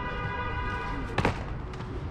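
A single sharp slap of a shoe on concrete about a second in, a freerunner planting his foot to take off, over a faint steady pitched hum that fades out.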